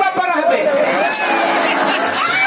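A voice speaking and drawing out its words over crowd chatter, with steady held musical tones coming in about halfway through.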